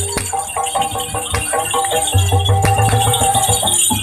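Ebeg Banyumasan gamelan music played loud: ringing metal tones over a rattling, jingling high end. A steady pulsing low beat comes in about halfway through.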